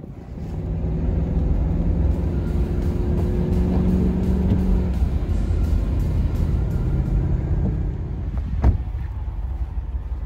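Ram 5500 trash truck's engine running with a steady low rumble from the drive over snow. There is one sharp knock near the end.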